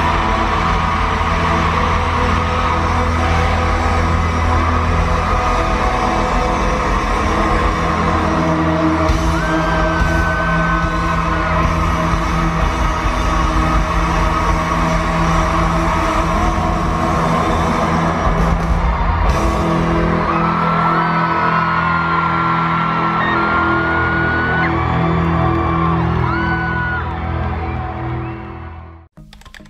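Loud live pop-rock concert heard from among the audience in an arena: the band playing at full volume while the crowd screams and whoops over it, with long held screams in the second half. The sound fades out at the very end.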